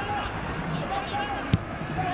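Football pitch-side sound: a steady background murmur of voices and one sharp thud of a football being kicked, about one and a half seconds in.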